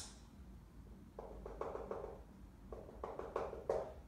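Dry-erase marker drawing on a whiteboard: a run of short, separate strokes starting about a second in, as dashed lines are drawn.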